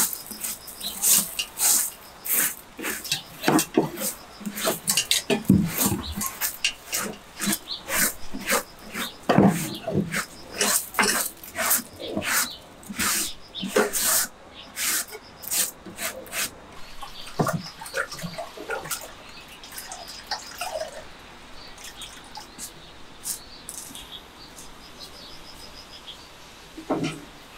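Dry leaves and plant litter rustling and crackling as a hand sweeps them across a wooden bench top. There are many quick crackles for the first two-thirds, then only a few quieter clicks.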